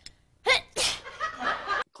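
A girl sneezes once, about half a second in: a quick sharp intake and then a loud burst.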